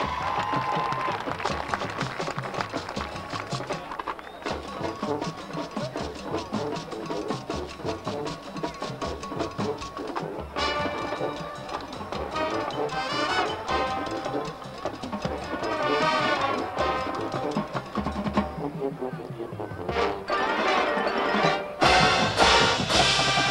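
Collegiate marching band playing a field show: brass and drumline together. Drum strokes carry the first half, then the full brass section comes in loudly with held chords about halfway through.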